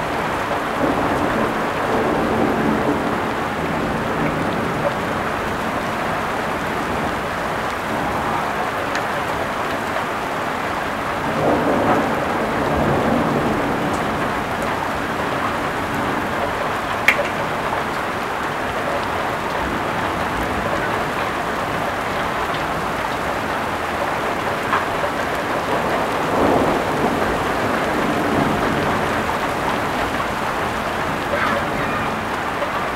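Heavy rain pouring steadily in a thunderstorm, with thunder rumbling in swells near the start, about twelve seconds in, and again near the end. A single sharp tick stands out once, a little past the middle.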